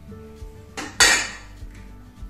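Two quick knocks of dishes against a kitchen counter, a small one followed straight after by a louder clink, over quiet background music.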